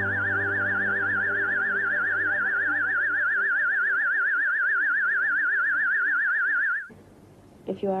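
Eerie synthesizer music: a high, fast-wavering tone held over low sustained notes, cutting off suddenly near the end.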